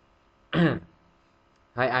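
A person clears their throat once: a brief sound falling in pitch. Speech begins near the end.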